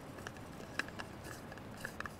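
Plastic protective cap being pushed onto the threaded steel end of a drill tube by gloved hands: faint rubbing with a few small, sharp clicks of plastic on the threads.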